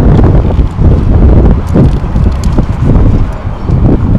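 Wind buffeting the camera microphone: a loud low rumble that comes in uneven gusts, with a few faint light clicks over it.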